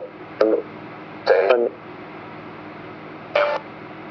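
Necrophonic ghost-box app playing short, chopped voice-like fragments from its sound bank through the tablet's speaker over a steady hiss: three brief bursts, about half a second, a second and a half, and three and a half seconds in.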